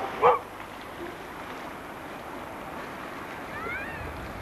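A dog barks twice in quick succession at the very start, then steady outdoor noise of sea and wind carries on, with a faint rising squeal near the end.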